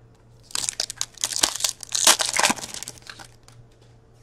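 Hockey-card pack wrapper crinkling and tearing as it is opened by hand, a dense run of crackly rustling lasting about two and a half seconds.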